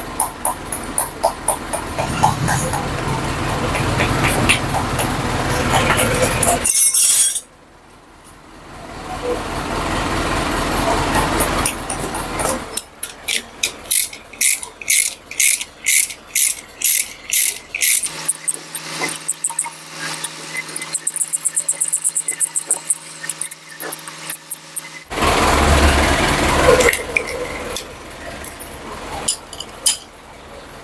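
Metal hand tools working on the cylinder head of a Mitsubishi L300 diesel engine during assembly. In the middle there is a run of sharp metallic clicks, about two a second, from a wrench on the head's bolts.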